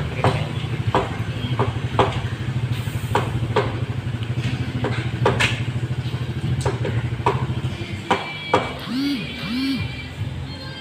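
Motorcycle engine idling, a steady low throb that dies away about eight seconds in, with scattered sharp clicks over it.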